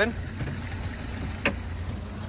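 Honda four-stroke outboard running steadily at low boat speed: a low hum under a light hiss, with a single sharp click about one and a half seconds in.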